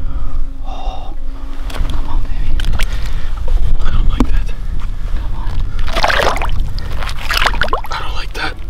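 A person's heavy, excited breathing and gasps over a steady low rumble, with two louder gasps near the end.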